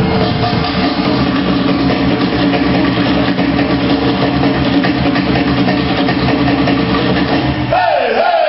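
Loud live band music for a Tahitian dance, driven by drums. Near the end the drumming breaks off and a sliding tone that rises and then falls comes in.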